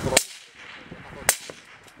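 Two sharp rifle reports about a second apart, the first just after the start and the louder of the two.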